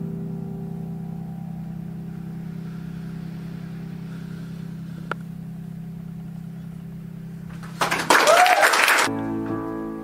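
A final held piano chord slowly dies away. Near the end, applause breaks out loudly with a brief whoop and is cut short after about a second as other music comes in.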